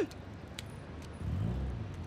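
Film soundtrack street ambience: faint background noise, with a low rumble that swells about a second in and fades away.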